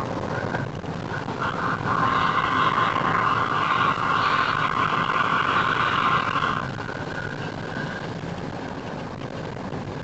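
Cabin noise of a natural-gas car driving at moderate speed: steady engine and tyre-on-road noise. From about a second and a half in until past the middle, a higher-pitched tone rides over it, then stops.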